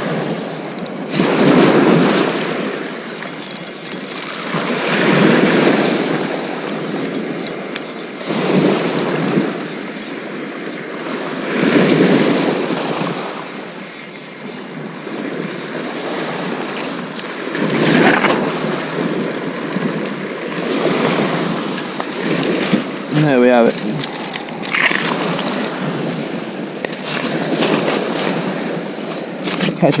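Waves breaking and washing on a shingle beach, swelling and fading every few seconds. About three-quarters of the way through there is a short wavering squeak.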